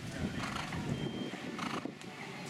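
Horse cantering on soft sand arena footing: dull hoofbeats, with a couple of stronger strokes about a second apart.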